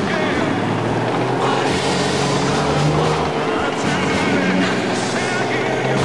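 An armoured vehicle's engine running as it drives slowly forward, under loud, steady crowd noise.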